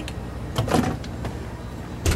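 Handling at an open refrigerator: one short knock with a rustle about two-thirds of a second in, over a steady low hum.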